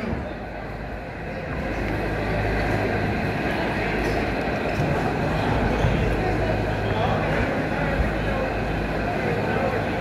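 Indistinct murmur of spectators' voices and a steady low rumble in a boxing gym between rounds, picking up slightly about a second and a half in.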